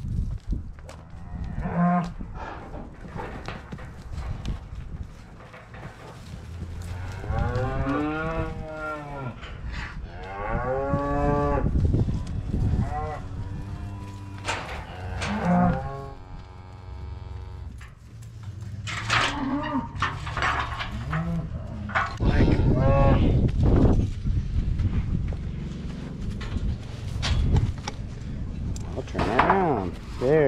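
Cattle mooing again and again, some calls long and drawn out, as cows and calves are being sorted apart for weaning.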